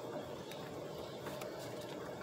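Steady low hum of a car rolling slowly at low speed, heard from inside the cabin, with faint scattered bird chirps from outside.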